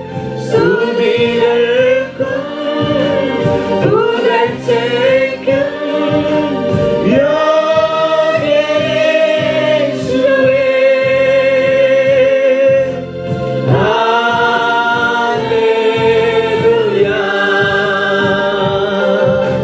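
A congregation singing a Christian worship song together in long, held phrases.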